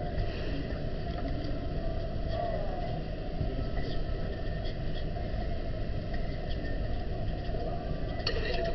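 Steady low rumbling background noise with no distinct events, with faint voices in the background.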